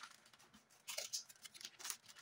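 Wrapping paper rustling and crinkling as it is folded and pressed by hand, in short scrapes about a second in and again near the end.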